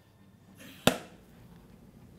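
RockShox Reverb hydraulic dropper seatpost extending when its remote is let go: a brief faint slide that ends in one sharp clack as the post tops out, a little under a second in. The post, freshly bled, comes back up fully.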